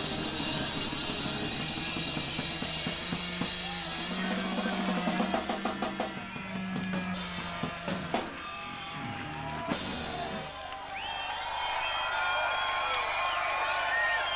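Psychedelic prog rock trio playing loudly live, breaking into heavy separate drum hits about four seconds in as the song ends. The band stops around ten seconds in, and whistles and shouts from the crowd follow.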